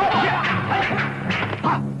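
Film soundtrack music over a steady low drone, with short shouted cries from the fighters; one sharp shout of "ah!" comes near the end.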